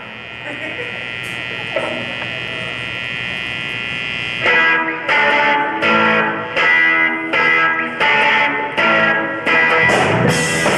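Solo electric guitar played live through an amplifier. A chord rings on steadily for about four and a half seconds, then the guitar switches to short, evenly spaced strummed chords, roughly three every two seconds.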